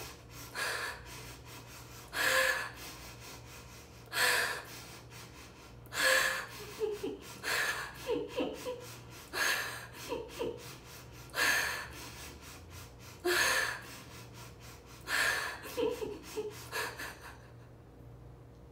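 A woman sob-breathing: sharp, gasping breaths about every two seconds, with short whimpering catches of voice between them. This is the breathing pattern of sadness, worked up deliberately in an emotion-inducing exercise.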